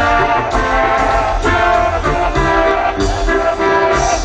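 Live band dance music, loud and continuous, with a steady beat and sustained melody. No vocal line stands out.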